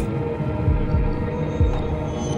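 Documentary background music: a low, sustained drone of held tones with soft low pulses underneath.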